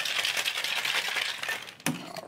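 Ice rattling fast and hard inside a cocktail shaker as a drink is shaken, then one sharp knock near the end.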